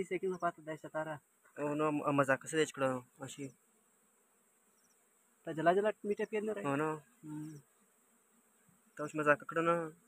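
A man's voice in several short phrases with pauses between them, over a faint, steady, high-pitched insect hum.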